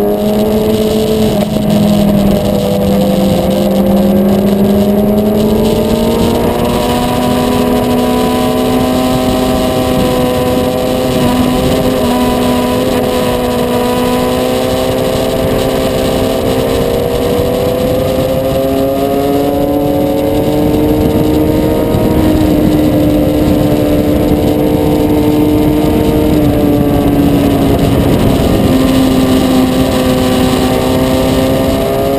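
Motorcycle engine running at steady, fairly high revs while riding through curves, its pitch creeping slowly upward, with wind rushing over the microphone.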